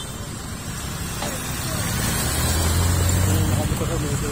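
A motor vehicle's engine running close by, a low steady hum that grows louder through the second half.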